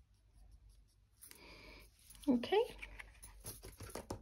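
Black Glint embossing powder shaken from its small pot onto a freshly stamped card tag, a faint brief hiss, followed by a short vocal hum and then light rustling and clicks of paper being lifted and handled.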